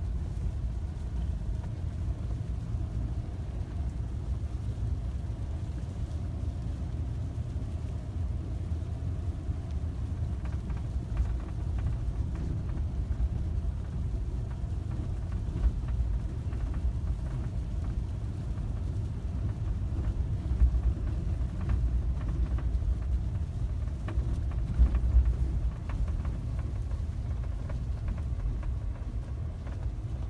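Steady low rumble of a vehicle driving slowly, heard from inside the cabin, with a few light knocks now and then.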